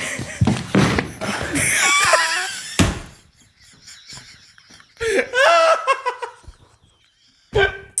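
Two people laughing hard. The laughter dies away about three seconds in, then breaks out again in high, wavering peals about five seconds in.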